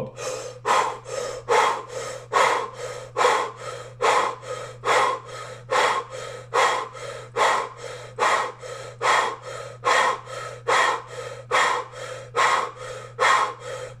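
A man breathing rapidly and forcefully in and out through a rounded mouth, a Kundalini yoga breathing exercise. Loud and softer breath strokes alternate in an even rhythm, a strong one a little more than once a second, over a low steady hum.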